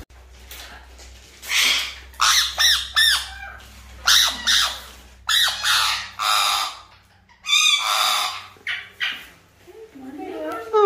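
A parrot giving a string of loud, harsh squawks in short bursts, about a dozen over the stretch, while it is restrained for a vaccination injection.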